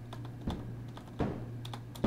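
Several light clicks and taps from hands working the controls, over a steady low hum.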